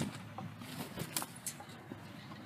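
Faint street ambience with distant car traffic, and a few light clicks.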